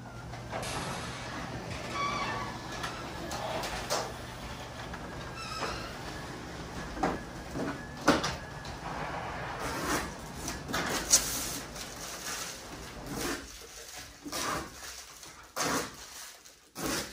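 Newly installed LiftMaster Elite Series garage door opener running the sectional door down, a steady motor hum with clicks and rattles, stopping about 13 seconds in; this is a run while its open and close travel limits are being set.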